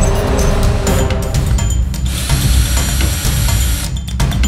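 Ridgid cordless drill running, a small bit cutting a hole through a metal wing nut clamped in vice grips. The drilling is heard over background music with a steady beat and is plainest for about the last two seconds, stopping suddenly near the end.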